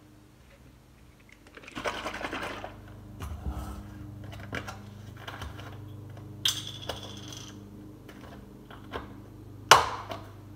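Handling sounds as a glass of iced espresso is set down and a plastic-capped almond milk carton is opened: ice clinking and rattling in the glass about two seconds in, a few light knocks, a brief rustle as the carton's cap and seal are worked, and a sharp click near the end. A steady low hum runs underneath.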